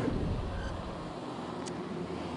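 Street traffic noise: a steady low rumble with road hiss that eases off slowly.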